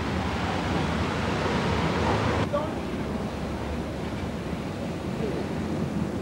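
Steady noise of city street traffic. About two and a half seconds in it cuts abruptly to a duller, slightly quieter noise.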